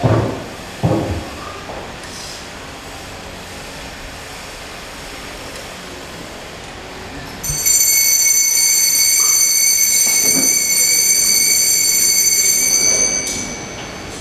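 Altar bells rung continuously for about five seconds as the monstrance is raised in blessing at Benediction. The ringing starts about halfway through, holds a cluster of high bright tones and stops abruptly. Two short dull thuds come at the very start.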